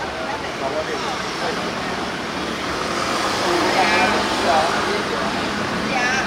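Steady street traffic noise from passing vehicles, with people's voices calling out over it now and then.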